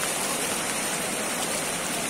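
Floodwater from an overflowing lake rushing fast and turbulent through a street, a steady, unbroken noise of moving water.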